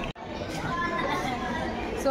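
Indistinct background chatter of people's voices, after a brief break in the sound a moment in.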